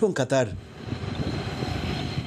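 City street ambience: a steady low rumble of traffic noise that comes in abruptly about half a second in, once a voice-over stops.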